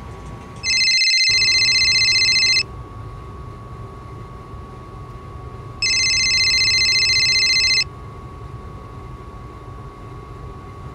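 Phone ringing with an incoming call. It is a high electronic ring that sounds twice, each ring about two seconds long, with a gap of about three seconds between them.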